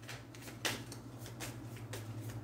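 Tarot cards shuffled by hand, soft and faint, with a sharper card click about two-thirds of a second in and a lighter one later, over a steady low hum.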